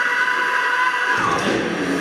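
Live heavy metal band in a brief break: the drums and bass drop out for about a second, leaving a held high note, then the full band comes back in with electric guitars.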